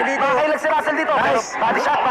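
A man talking without pause.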